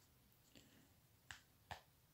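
Near silence with a few faint clicks as fingers handle a plastic 1/6-scale action figure. There is a soft tick about half a second in, then two sharper clicks a little under half a second apart.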